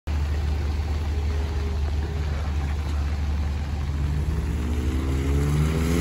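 A car engine accelerating, its pitch rising steadily and growing louder from about four seconds in, over a steady low rumble: a Ford Focus with a swapped-in 2.5-litre engine.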